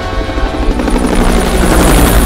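Helicopter rotor and engine overhead, with film-score music underneath.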